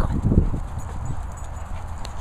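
Dogs running on grass right by the microphone: a muffled low thudding in the first half-second, over a steady low rumble of wind on the microphone.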